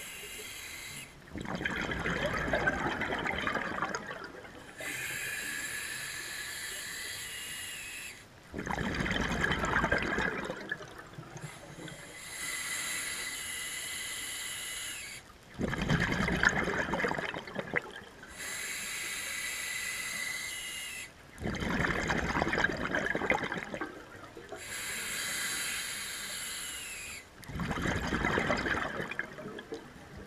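Scuba diver breathing through a regulator in a steady rhythm. A hissing inhale with a faint high whistle is followed each time by a louder burst of exhaled bubbles, about every six and a half seconds, five breaths in all.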